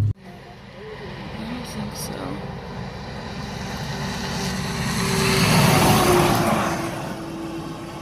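A road vehicle passing on the highway close by: its tyre and engine noise swells to a peak about six seconds in, then fades away.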